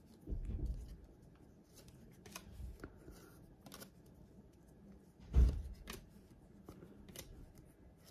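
Thin paper-stock baseball trading cards (2022 Topps Update) handled one by one, with light clicks and rustles as each card is slid off the stack. A louder soft thump comes about five seconds in.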